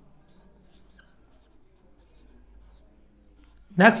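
Marker pen writing on a whiteboard: faint, short strokes one after another. A man's voice starts near the end.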